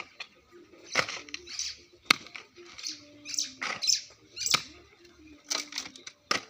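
Hand hoe and shovel digging into soil: a series of irregular chopping strikes into earth, about eight in six seconds.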